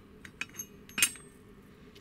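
Steel Vespa clutch parts, the toothed inner hubs of a Cosa clutch, clinking against each other and the clutch basket as they are handled and set down: a couple of light clicks, then one sharp metallic clink with brief ringing about a second in.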